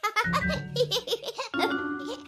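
A child-like cartoon voice giggling in quick bursts for about a second and a half, over light children's background music. Near the end, held musical notes carry on alone.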